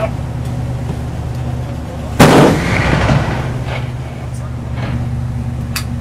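A single shot from a ship-mounted 20 mm Oerlikon GAM-B01 cannon, a warning shot fired at a vessel's bow, about two seconds in, with a reverberating tail that dies away over about a second. A steady low hum from the ship runs underneath.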